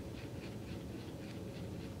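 Faint brushing of watercolour brushes on paper over quiet room tone.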